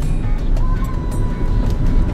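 Steady road and engine rumble inside a moving car's cabin, under background music. A single steady high tone comes in a little over half a second in and holds to the end.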